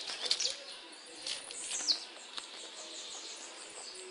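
Small birds chirping in short, high calls, several in the first two seconds and fewer after.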